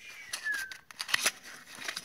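Small cardboard cartridge box handled and its end flap pulled open: a brief falling squeak of card rubbing on card, then several light clicks and scrapes.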